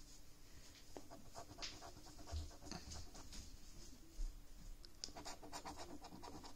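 A coin scratching the coating off a paper scratchcard in short, faint strokes, with a quicker run of strokes near the end.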